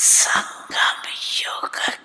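Speech only: an elderly woman talking into a microphone, in short phrases broken by brief pauses.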